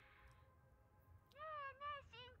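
Two short meow-like calls in the second half, each rising then falling in pitch.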